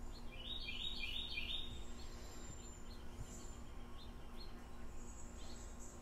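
A bird calling: a quick run of four short rising chirps beginning about half a second in, over a faint steady hum.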